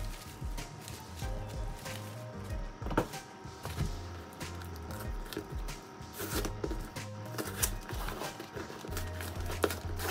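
Background music with held tones and a low bass line, over scattered clicks and crinkles from packaging being handled: cardboard and paper tape.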